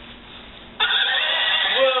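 A horse whinnying: one long, quavering whinny starting about a second in.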